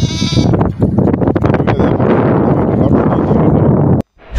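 A goat bleats once, briefly, at the start, followed by loud, rough rustling noise that cuts off abruptly at the end.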